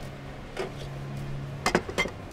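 A glass mixing bowl being set down on a table, giving a couple of short knocks near the end, over a faint steady low hum.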